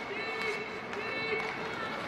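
Ice hockey game sound in an arena: skates on the ice and voices calling out, echoing in the rink.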